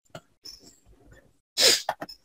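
A sharp burst of a person's breath close to the microphone, near the end, with a shorter second burst right after it. A few faint small sounds come before it.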